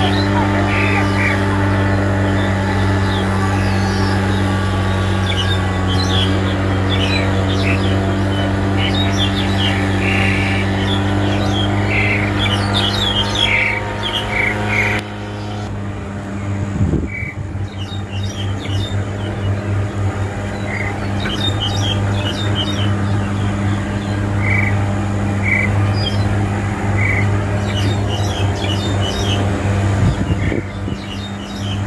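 Wild white-shouldered starling (jalak Hongkong) calling in short, irregular chirps and squawks. A steady low mechanical hum, like a motor running, sounds underneath throughout.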